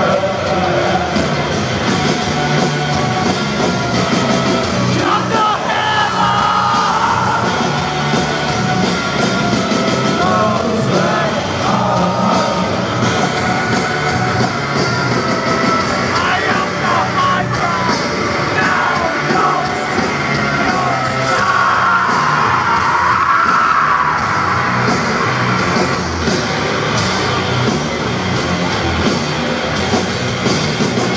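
Live heavy rock band playing loudly in a large hall, with yelled and sung vocals over distorted guitars and drums.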